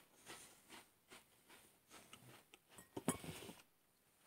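Faint crunching and mouth clicks of a cracker being chewed, with a brief louder cluster of clicks about three seconds in.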